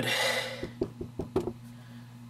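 Knuckles knocking on wood for luck: about half a dozen quick, sharp raps in roughly a second, after a short breathy sound.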